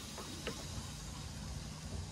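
A steady low hum under a faint outdoor wash of wind and water, with a couple of soft knocks in the first half second.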